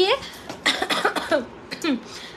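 A woman coughing between words, with a throat clearing.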